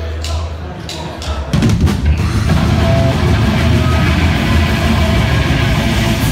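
A live heavy rock band starting a song. A few evenly spaced taps count in over a low steady hum, then about a second and a half in the full band comes in loud, with drum kit, electric guitar and bass guitar.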